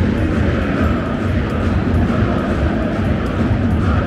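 Steady noise of a large football stadium crowd, a dense mass of voices and singing from the stands.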